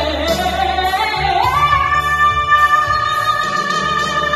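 A woman singing a rock ballad into a microphone over backing music, her voice gliding up about a second in to a long held high note.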